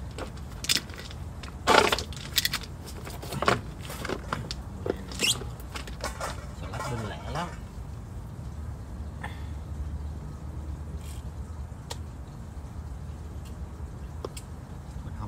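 Garden scissors snipping lettuce leaves and stems, with scattered sharp clicks and rustling of the leaves over a steady low rumble. The loudest is a sharp knock a little under two seconds in.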